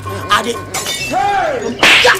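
A short, sharp crash near the end, after an arching whistle-like glide about a second in.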